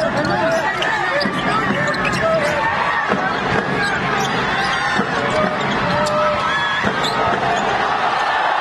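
Basketball arena game sound: a ball being dribbled on the hardwood court, a few separate bounces, over the steady chatter of a large crowd.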